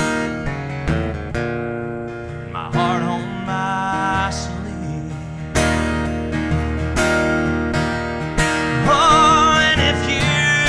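Acoustic guitar strummed in chords that are struck anew about every second and a half, with a man's singing voice, held notes with vibrato, a few seconds in and again near the end.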